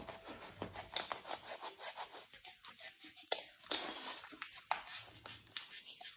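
Sharp hobby knife cutting V-grooves into foam board: faint, irregular scratching and creaking of the blade through the foam, with one sharper click about three seconds in.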